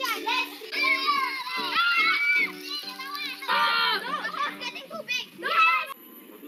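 A group of children shouting and calling out at play, with high-pitched voices rising and falling and the loudest outburst near the end, over background music with steady held notes.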